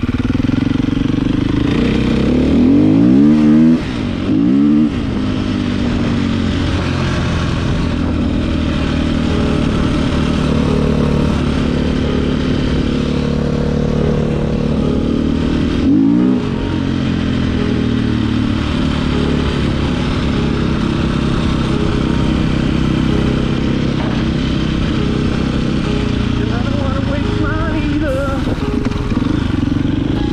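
450 dirt bike's single-cylinder four-stroke engine running under way, revved up in quick rising runs about two to five seconds in and again around sixteen seconds, otherwise holding a steady pace.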